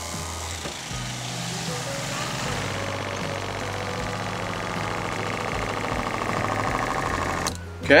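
SEAFLO 12-volt diaphragm water pump running steadily as it pressurises a van's freshly plumbed water lines, growing slightly louder, then cutting off suddenly near the end once the system reaches pressure, a sign that the lines hold pressure rather than leaking steadily.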